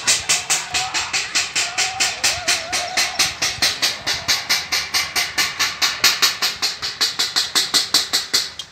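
Metal plates (thalis) being beaten rapidly and evenly, about six clangs a second, to scare off a locust swarm.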